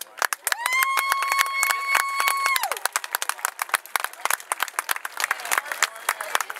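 Audience in the stands clapping and cheering. Near the start a single loud whistle rises, holds steady for about two seconds, then drops away.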